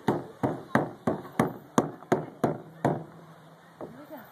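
A small child's hand slapping the plastic surface of a playground slide, about nine sharp strikes at roughly three a second that stop about three seconds in.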